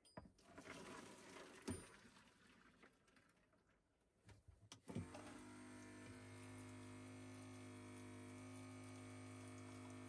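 Water running from the faucet into a pot of lentils, with the camper's small electric water pump humming steadily as it runs. The pump and flow start about halfway through. Before that there is a faint swishing of water and a knock as the pot is handled.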